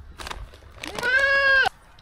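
Young goat kid bleating once, a single steady call of just under a second, starting about a second in.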